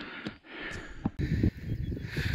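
Wind rumbling on the microphone, with a few faint knocks.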